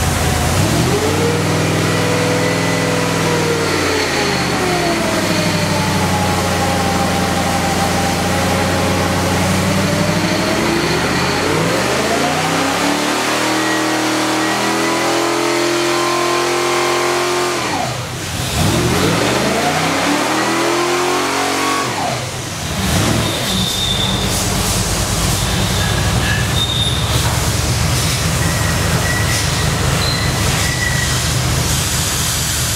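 496 cubic-inch V8 on an engine dyno. It revs up and back down, holds steady, then makes a long full-throttle pull climbing to about 5,500 rpm (around 520 hp on the readout) that cuts off suddenly. It gives one shorter rev and drop, then settles to a steady idle near 1,100 rpm.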